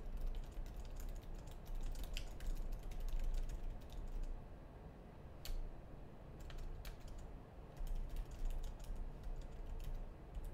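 Typing on a computer keyboard: quick runs of key clicks, thinning to a few scattered clicks around the middle, then another quick run near the end.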